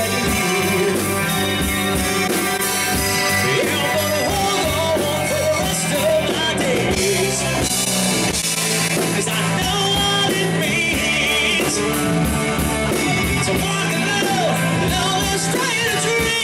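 A live rock band playing: electric guitar, electric bass and drum kit, with a lead vocal line over them, loud and continuous.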